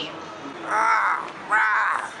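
A man's loud, hoarse, drawn-out yells, caw-like: two cries about half a second long, one in the middle and one near the end.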